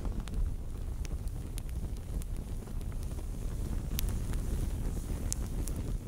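Burning-flames sound effect: a steady low rumble with scattered sharp crackles.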